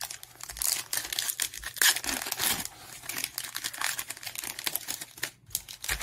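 Foil wrapper of a Panini Prizm basketball card pack being torn open and crinkled by hand: an irregular run of sharp crackles and rustles.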